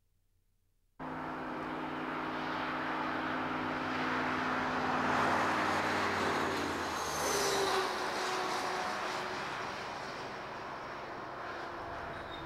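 Highway traffic going by. It starts abruptly about a second in with a steady engine hum and road noise that swell towards the middle. A vehicle passes about seven seconds in, its pitch dropping as it goes by.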